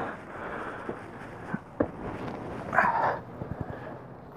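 Someone climbing a metal RV ladder onto the roof: a few short knocks and scuffs from feet and hands on the rungs, a short rustle about three seconds in, and wind on the microphone.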